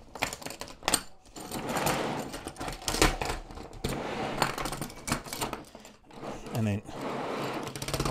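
Metal track links of a 1/6-scale Tiger I tank model clattering and clinking against each other, the road wheels and the workbench as the unpinned track is pulled off the running gear. The clatter is irregular and keeps going with small pauses.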